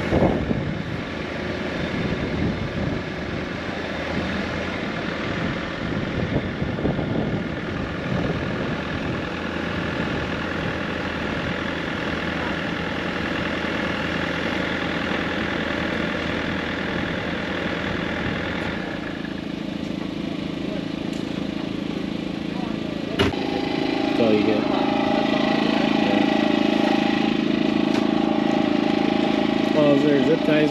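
A mini excavator's diesel engine runs steadily while its boom is moved and folded up. About three-quarters of the way in, a sharp click comes, and a louder, different steady engine sound follows.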